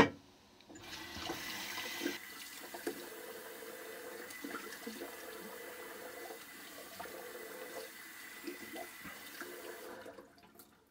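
A sharp knock, then a bathroom sink tap running steadily from about a second in until it is turned off at the end.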